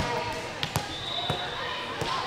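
Echoing gym ambience with faint voices, broken by a few sharp knocks of a volleyball bounced on the hard court floor.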